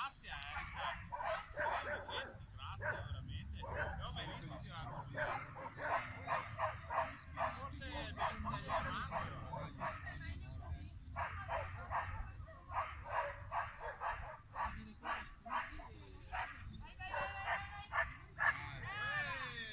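A dog barking and yipping excitedly over and over, several short calls a second, with a low steady rumble underneath.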